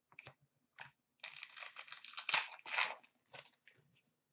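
Crinkling and rustling of trading-card packaging handled by hand: a few light clicks, then about two seconds of crinkling with a couple of louder crackles.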